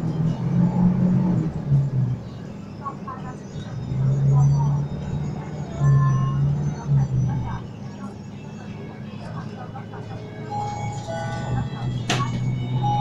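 Bus interior with the engine running, a low hum that swells and drops in stretches of about a second, mixed with passengers' voices and some music-like tones.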